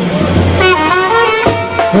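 Live street band music played loud through flared horn loudspeakers, with a held brass note, likely a trumpet, about half a second in. A man's amplified voice starts calling near the end.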